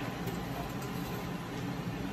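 Steady hum and hiss of a Kellenberger Kel-Varia CNC cylindrical grinder sitting under power, with no grinding going on.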